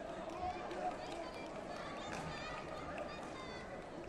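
Indistinct voices: several people talking at once in a large sports hall.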